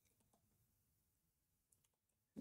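Near silence with a few very faint computer keyboard clicks as a word is typed.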